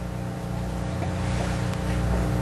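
A low, steady drone of several held tones, swelling slightly louder toward the end.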